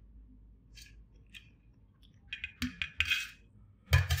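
Steel spoon scraping and clinking on a stainless steel plate, gathering up rice. A few faint scrapes at first, then a run of scrapes and clicks from about halfway, ending in a sharp knock.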